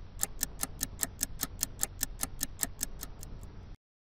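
Clock-ticking sound effect: rapid, even ticks about five a second over a low hum, cutting off abruptly just before the end.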